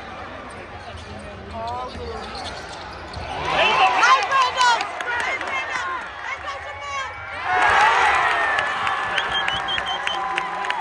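Basketball game sounds in an arena: a ball dribbled on the hardwood court amid players' and spectators' shouts. The crowd noise swells louder about three quarters of the way through.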